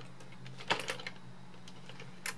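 Plastic toy robot being handled and turned over in the hands: a few light plastic clicks and knocks, the loudest about three-quarters of a second in, over a faint steady low hum.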